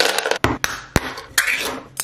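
Dry dog kibble poured from a bag into a plastic bowl, a dense rattle of pellets hitting the bowl, followed by a few sharp separate clicks and knocks.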